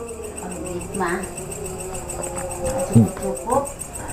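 Crickets chirping steadily, a continuous high pulsing trill, under a low sustained tone.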